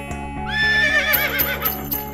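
Horse whinny sound effect over intro music: a high call about half a second in that quavers downward for about a second. A regular beat of short strokes joins the music under it.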